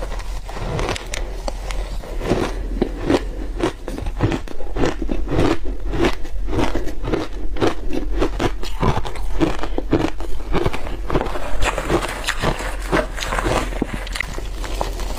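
A mouthful of matcha shaved ice being chewed, a rapid run of crisp crackling crunches.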